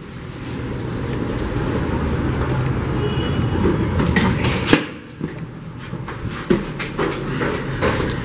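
Rolling suitcase wheels rumbling along a hallway floor, then a single sharp knock just before the five-second mark and a few lighter knocks.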